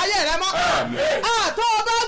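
A woman's voice praying aloud in Yoruba, high-pitched and raised.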